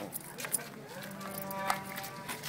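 A single long, steady, low-pitched voiced sound, a held hum or call lasting about a second, starting midway through.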